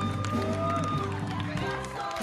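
Live musical-theatre ensemble number: several voices singing held notes over instrumental accompaniment with a steady bass line.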